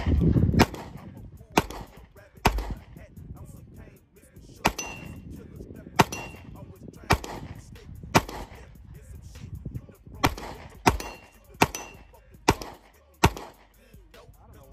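About a dozen 9mm pistol shots from a Glock 19-pattern pistol fired at a steady pace of roughly one a second, some followed by a faint ring of steel targets downrange. The pistol is cycling through the string without a stoppage.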